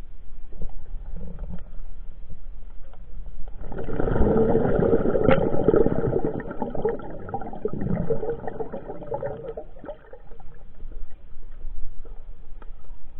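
Water sound picked up by a camera under the sea, a rushing, bubbling noise full of small clicks that swells about four seconds in and eases off near ten seconds.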